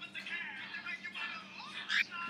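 Faint music leaking from earbuds playing loudly into the wearer's ears.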